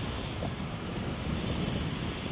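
Steady rush of wind buffeting the microphone of the camera mounted on a Slingshot ride capsule as it swings and descends.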